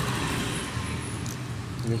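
Steady low background rumble with a faint hiss, like distant road traffic, with no distinct mechanical sound standing out.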